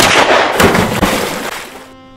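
A sudden loud bang, then about a second and a half of dense crashing noise with a few heavy thumps in it, dying away before the end.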